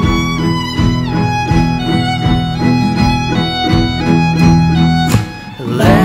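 Instrumental break of a country-style song: a fiddle plays the melody with sliding notes over guitar strummed in a steady rhythm. The music dips briefly near the end before coming back in.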